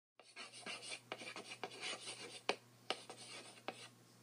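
Chalk writing on a blackboard: a run of quick scratching strokes for the first couple of seconds, then a few separate sharp taps of the chalk against the board.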